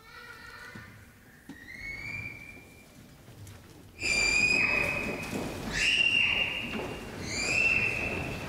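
High whistle-like tones. Quieter notes and an upward slide come first, then from about four seconds in a louder series of held notes of a second or so each, each scooping up into the same high pitch.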